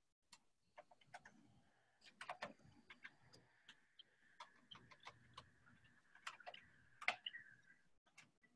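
Faint, irregular computer keyboard keystrokes as a command is typed: about twenty scattered clicks, with a quick run of them about two seconds in and another near the end.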